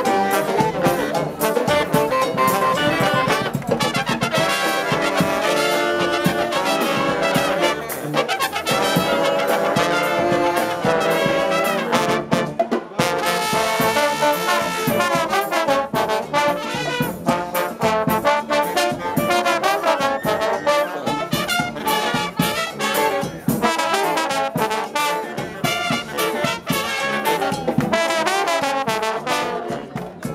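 Live brass band playing a tune: trumpets, trombones, saxophones, euphoniums and sousaphone in full ensemble over a steady drum beat.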